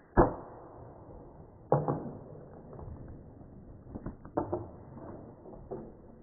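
Arrow striking a feral hog with one sharp smack, followed by several thumps and scuffs as the hit hog scrambles and bolts from the feeder.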